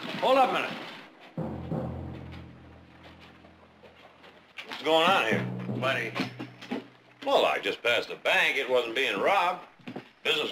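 Men's voices talking over a dramatic television score. The music holds a low note from a little over a second in, then a second, higher held note under the talk about halfway through.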